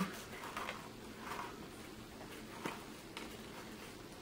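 Faint, soft rustling of tulle netting being wrapped around a plastic case by hand, with a couple of light clicks near the end.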